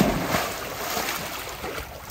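A Great Dane cannonballs into a swimming pool: a loud splash at the start, then water churning and slapping around it as it paddles, slowly dying down.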